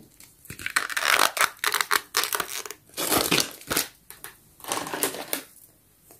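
Thin clear plastic toy packaging crinkling and crackling as it is handled, in several irregular bursts with short pauses between them.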